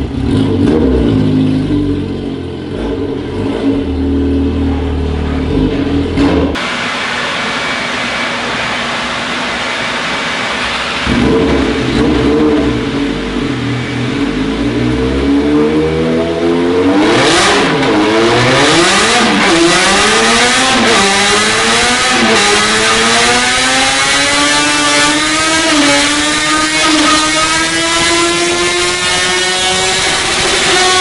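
Yamaha XJ6's 600 cc inline-four run hard on a dynamometer. It runs at low revs at first. In the second half it revs up through the gears, the pitch dropping at each upshift and climbing again, then rising steadily as the bike reaches top speed.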